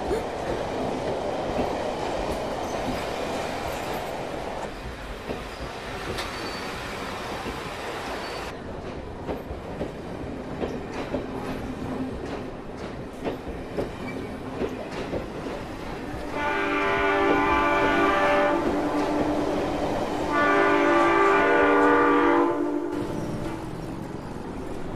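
A train running, with rattling and clicking from the carriages, then two long blasts of the train's horn in the last third, the loudest sounds here.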